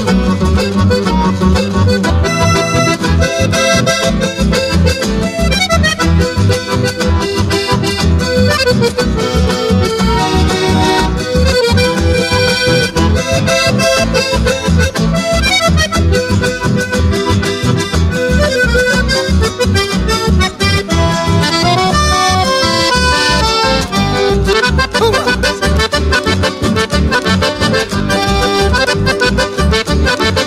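Instrumental chamamé passage: button accordions play the melody over acoustic guitars and a steady bass pulse, with a quick falling run about two thirds of the way through.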